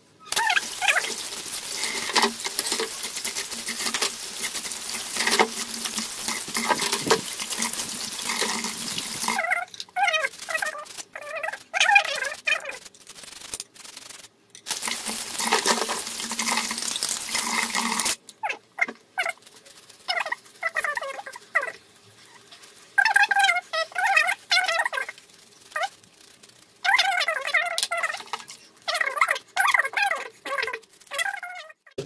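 Tap water running into a basin of soapy water in two long spells. Between and after them come short squeaky rubbing sounds as wet gas-stove burner parts are scrubbed and rinsed by hand.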